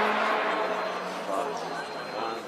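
Faint, indistinct speech from the event commentary, with a dull background haze of the track and crowd.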